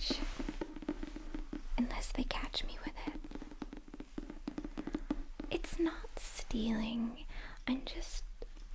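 Soft whispering close to the microphone, with many light taps and clicks from fingers and nails handling a hardcover book.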